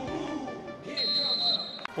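A referee's whistle blown once: a single steady high note lasting under a second near the middle, over background music.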